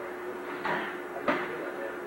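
Foam-padded sparring sticks striking each other in a bout, two dull thuds about two thirds of a second apart.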